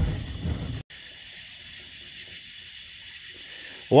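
A low boat-motor rumble for under a second cuts off abruptly. It gives way to faint, steady night-time insect chirring over hiss.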